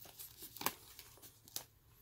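Plastic shrink-wrap on a vinyl LP jacket being torn and crinkled by hand: faint crackling with a couple of sharper snaps.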